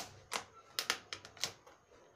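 A clear plastic packet being handled and crinkled by hand, giving about seven short, sharp crackles at uneven intervals.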